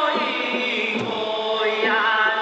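Amis folk song: a sung chant with held, wavering vocal lines and a low thud about a second in.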